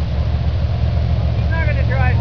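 Race car engine running steadily on a slow parade lap, heard from a distance as a low drone.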